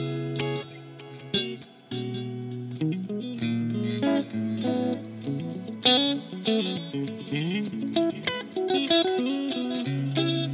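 Ibanez SA360NQM electric guitar played through an amp and effects: held chords at first, then melodic phrases of moving notes between strummed chords.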